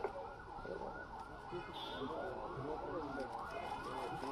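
Indistinct chatter of many overlapping voices, with faint quick clicks above it.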